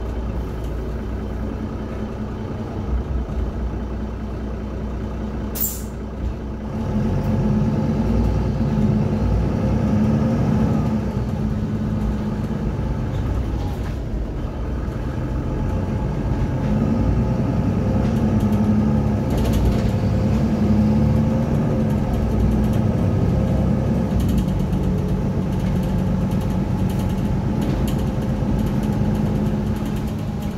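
Diesel engine of a Mercedes-Benz Citaro single-deck bus, heard from inside the saloon. It runs low at first, with a short sharp hiss of air about six seconds in. From about seven seconds it grows louder and runs under load as the bus pulls away and travels.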